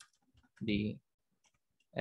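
Computer keyboard being typed on, a scatter of light key clicks around a single spoken word.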